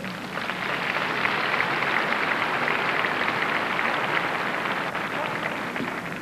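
A large audience applauding, swelling over the first second and then holding steady.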